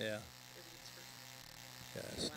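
Steady low electrical buzz, a hum on the audio line, with a short spoken word at the start.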